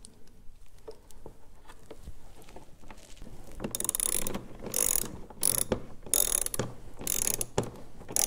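Socket ratchet turning screws into a plastic snowmobile hood: faint clicks at first, then from about four seconds in a run of ratchet clicking in short bursts, a little under two a second.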